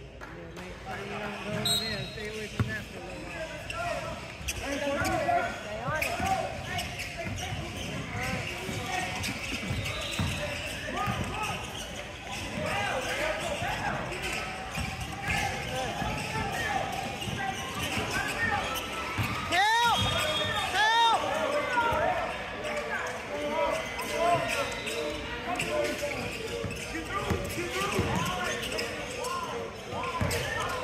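Basketball being dribbled on a hardwood gym floor, with sneakers squeaking as players run and cut, and indistinct voices calling out in a large echoing gym. A sharp pair of sneaker squeaks stands out about twenty seconds in.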